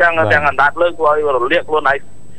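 Continuous speech with only short pauses between words.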